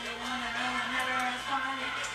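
A song with a singing voice playing in the background.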